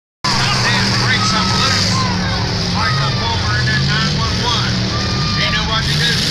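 Demolition derby cars' engines running steadily in the arena, with people's voices over them.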